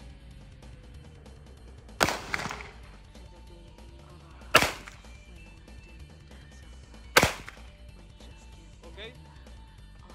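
Three single gunshots from a Glock pistol mounted in a CAA Roni MCK carbine conversion kit, spaced about two and a half seconds apart.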